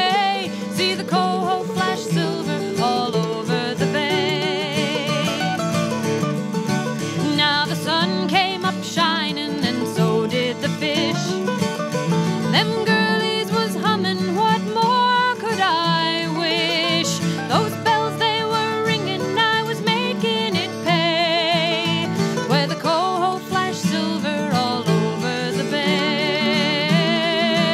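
Acoustic folk music: plucked guitars and other strings under a wavering melody line that comes and goes.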